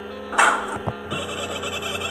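A short cartoon splash sound effect about half a second in, over steady background music. A high, chattering effect follows in the last second.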